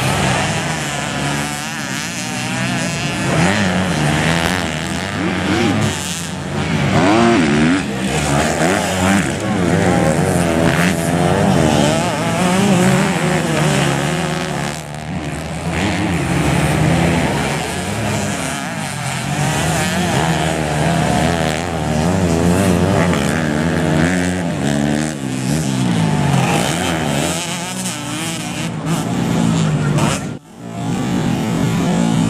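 Dirt bike engines racing on a dirt track, several at once, their pitch rising and falling as the riders rev up and back off.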